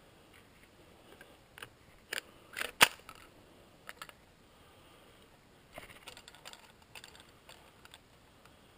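Footsteps crunching through dry fallen leaves and twigs in the forest undergrowth: scattered sharp snaps and crackles, the loudest a single snap near the middle, then a run of crunching steps near the end.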